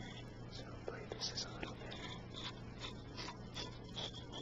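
A man whispering softly close to the microphone in short, broken fragments, over a steady low hum and hiss from a cheap, noisy recorder.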